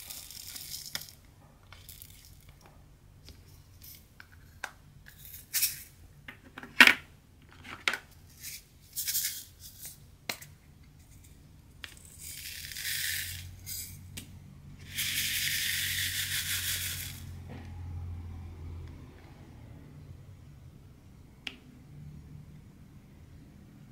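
Sharp plastic clicks and taps in the first half, the loudest about seven seconds in, as a drill container and tray are handled. Then round resin diamond-painting drills are poured into a plastic tray, rattling in two pours of about one and two seconds.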